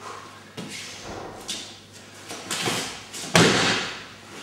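Two people practising an aikido technique on a thin mat over a hard floor: shuffling bare feet and rustling uniforms with several knocks, then one loud thump with a short echo about three and a half seconds in, as a body or foot strikes the mat.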